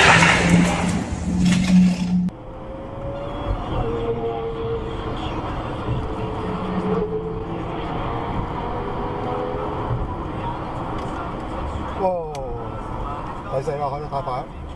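Loud car engine and street noise cuts off about two seconds in, giving way to steady road noise heard from inside a moving car. A person's voice comes in near the end.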